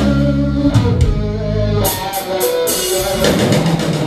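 Live rock music: electric guitar played over bass and drums, with a run of drum and cymbal hits about two seconds in.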